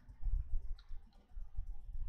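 A few light clicks and dull low bumps from handwriting on a tablet with a digital pen.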